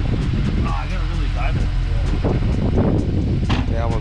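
Honda S2000 engine idling steadily, with people talking over it.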